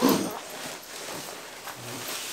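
A brief cough-like throat sound from a man at the start, then fainter zipper and fabric rustling as a padded guitar gig bag is unzipped and opened.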